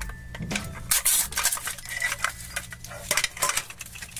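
Hard plastic clicking and rattling as a compartment of a plastic surprise-toy capsule is pried open and handled, with a louder crinkle about a second in.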